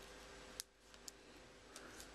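Near silence with a few faint clicks as fingers pick at tape on a plastic card sleeve.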